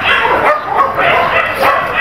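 Dogs in shelter kennels barking repeatedly, several barks overlapping.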